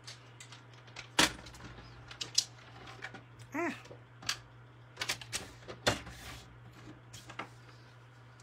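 Cardstock and craft tools handled on a table and the sheet set onto a paper trimmer: a run of sharp taps, clicks and paper rustles, the loudest about a second in and again near six seconds.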